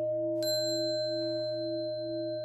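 A small bell struck once, about half a second in, ringing on with clear high overtones over a steady singing-bowl-like drone whose middle tone pulses slowly.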